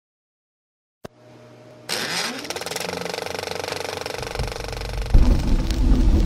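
Film projector switched on with a click, its motor humming and then spinning up into a rapid, steady mechanical clatter. Low, heavy music comes in near the end and grows louder.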